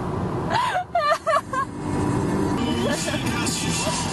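Car cabin noise while driving: a steady rumble of engine and tyres on the road. A brief, indistinct voice comes in about half a second in.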